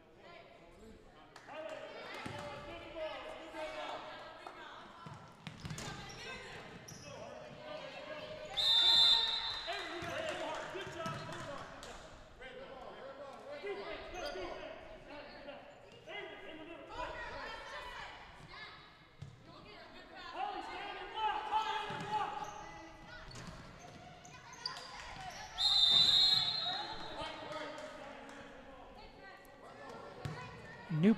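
Voices echoing in a school gymnasium during a basketball game, with a basketball bouncing on the hardwood court. Two loud, high-pitched blasts stand out, about nine seconds in and again near the end.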